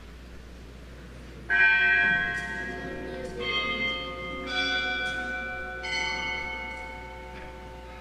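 Consecration bells at Mass, rung at the elevation of the chalice: four strikes at uneven intervals over about four seconds. Each strike rings on and fades, and each has a somewhat different pitch. The first strike is the loudest.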